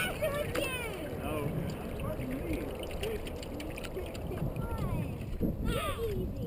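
Faint, distant voices from people in a canoe over a steady low rumble of wind on the microphone.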